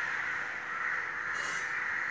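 Steady background din of birds calling, with no speech over it.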